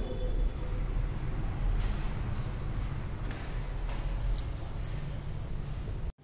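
Steady high-pitched insect trill, such as crickets make, over a low background hum, with a few faint scratches of a ballpoint pen writing on paper.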